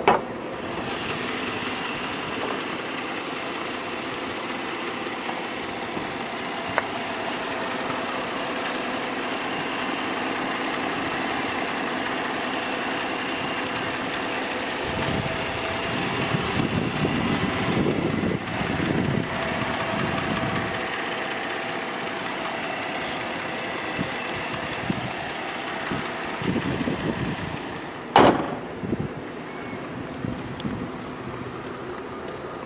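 2004 Cadillac CTS engine idling steadily, heard up close with the hood open, with a thin steady whine over the running. A single sharp thump sounds near the end.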